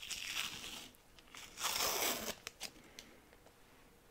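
Masking tape being peeled off a freshly painted part: two rasping pulls, the second one louder, followed by a few light clicks as the part is handled.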